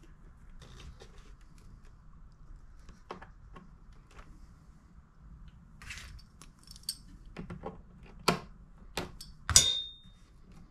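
Faint clicks and handling noises of hands working a rubber fuel line and hose clamp onto a small engine's fuel fitting. Near the end come several sharp knocks and one louder metallic clatter with a short ring, as hand tools and the engine are handled on the bench.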